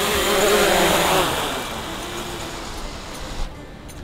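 Small folding quadcopter drone's propellers whirring as it comes down to land on a low-battery warning. The sound fades over the first few seconds and drops away near the end.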